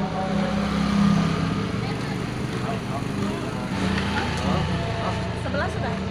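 Quiet talking over a steady low hum.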